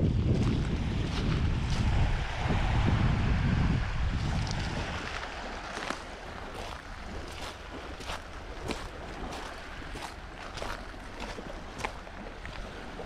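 Wind buffeting the microphone over small waves lapping on a pebble beach. About five seconds in the wind drops and footsteps crunch steadily on shingle and sand, about one and a half steps a second.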